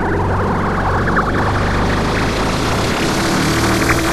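Trance track in a build-up: sustained synthesizer chords under a noise sweep that swells and brightens steadily.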